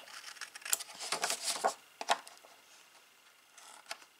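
Small scissors snipping 200 g kraft cardstock, several short cuts in the first two seconds, angling off the corners of the glue tabs.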